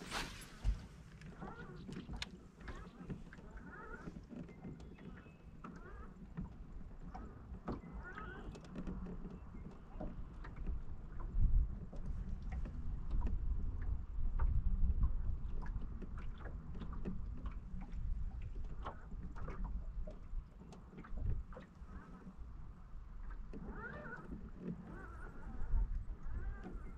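Wind gusting over the microphone, a low rumble that swells about halfway through, with scattered small clicks and knocks from the boat and fishing tackle. A sharp burst at the very start comes with a cast.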